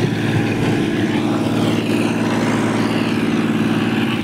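Motorbike engine running at a steady speed while riding, with wind rushing over the microphone.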